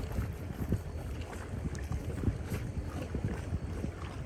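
Wind buffeting the microphone outdoors: a steady low rumble with scattered faint ticks.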